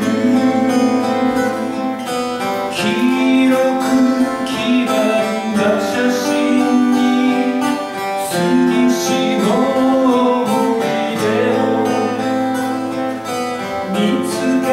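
Two acoustic guitars playing a slow folk song, with a melody of long held notes over the chords.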